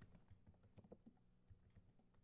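Faint, irregular keystrokes on a computer keyboard as commands are typed.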